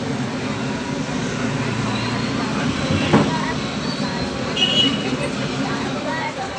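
Crowd hubbub: many voices talking at once, none clearly, with a single sharp knock about three seconds in.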